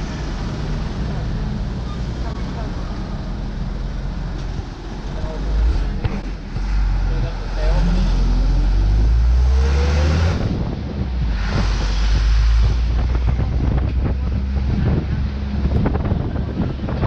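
Vehicle engine and road noise heard from an open-sided vehicle driving along a town street, with wind buffeting the microphone. The rumble grows louder about a third of the way in, and the engine climbs in pitch as it accelerates around the middle.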